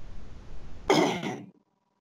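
A steady low hiss and rumble, then a person clears their throat once, about a second in.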